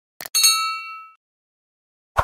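Subscribe-animation sound effect: a short click, then a bright bell ding whose ringing tones fade out within about a second.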